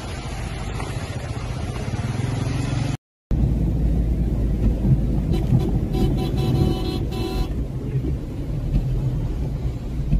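For about the first three seconds, a steady outdoor wash of water and wind noise. After a cut, a car's engine and road noise fill the cabin as it drives through floodwater. A car horn sounds for about two seconds near the middle.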